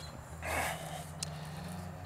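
A soft breath out through the nose about half a second in, then a single light click as a metal framing square is handled, over a faint steady low hum.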